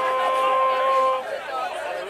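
A person's long shout held on one steady note, which stops about a second in and gives way to crowd chatter.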